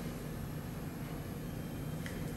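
Faint steady background hiss with a low hum: room tone, with no distinct sound.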